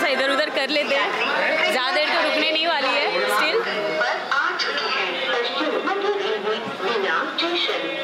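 Many voices chattering among passengers on a railway station platform, with background music underneath.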